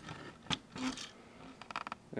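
Plastic blister-packed items being handled and set down on a table: a sharp knock about half a second in, some rustling, then a quick run of clicks near the end.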